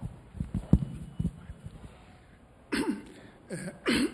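Several low thumps and knocks of a microphone being handled in the first second and a half, then a man begins speaking into it near the end.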